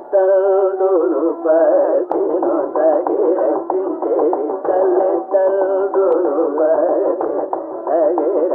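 Carnatic music in raga Poornachandrika: singing in ornamented, gliding phrases with held notes, over the strokes of a drum.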